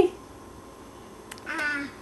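A single short meow-like call about one and a half seconds in, slightly falling in pitch, after a brief quiet with a faint click.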